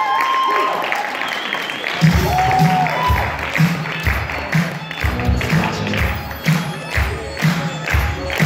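Crowd applauding and cheering, then dance music with a steady beat coming in about two seconds in and playing on under the clapping.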